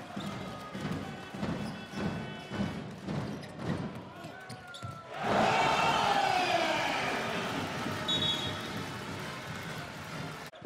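Basketball arena sound: a ball bouncing on the hardwood court in a steady rhythm under crowd noise, then about five seconds in the crowd suddenly breaks into a loud cheer that slowly dies down.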